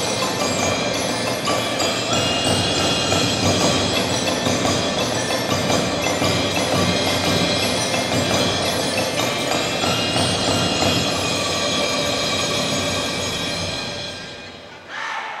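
A percussion ensemble playing continuously: marimbas and xylophones with ringing, bell-like mallet tones, backed by drums.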